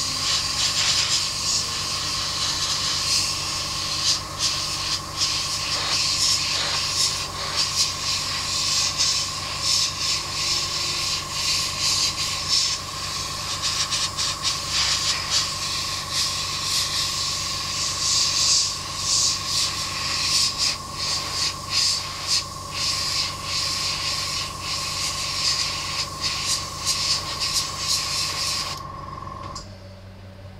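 A 0.3 mm airbrush spraying undiluted black primer: a steady hiss of air and paint that flickers as the trigger is worked, over a low hum. The spraying stops about a second before the end.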